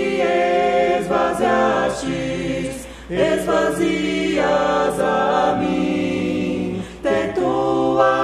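A choir singing a Portuguese hymn a cappella in several voice parts, with short breaks between phrases about three seconds in and again near the end.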